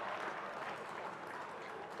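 Audience applause that slowly dies away.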